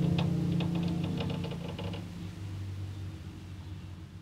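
A low, sustained cello note fading away, with a quick run of light clicks in the first two seconds.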